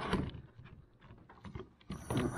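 Fish finder mount's T-bolt sliding along an aluminum kayak gear track: faint scraping and a few light clicks, the clicks clearest about a second and a half in.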